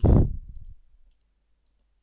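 A loud, low thud on the microphone right at the start, dying away within about a second, followed by a few faint computer mouse clicks as list entries are selected.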